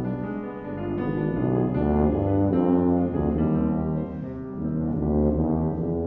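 Tuba playing a melody that moves through several notes, with piano accompaniment.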